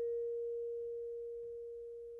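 A single vibraphone note ringing on after being struck, an almost pure mid-pitched tone that slowly fades.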